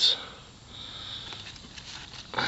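Quiet background hiss with a faint, thin, steady high-pitched tone through most of the pause.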